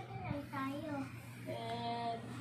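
A young child's voice vocalizing in a sing-song way, gliding between pitches and holding a couple of notes near the end, over a steady low hum.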